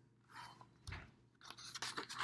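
Faint rustling and scraping with a soft thump and a couple of light clicks: a paper book being handled as its page is turned.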